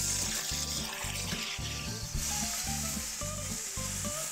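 Oil and beef tallow sizzling in a hot cast iron pan, with the burner just turned off, under background music with a steady low beat.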